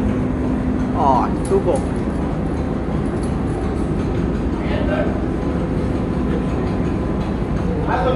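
Heinrich Lanz steam engine running with a steady low rumble, with brief snatches of voices over it.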